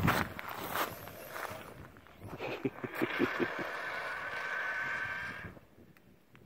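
Traxxas Stampede VXL RC truck's brushless electric motor and drivetrain whining steadily as the truck drives some distance off, cutting off sharply near the end. A few soft low thuds sound in the middle.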